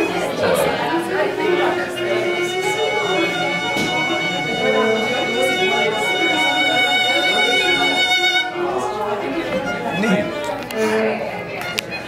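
A violin plays one long bowed note with vibrato that goes from slow to fast, after a few shorter moving notes. The note stops about eight and a half seconds in.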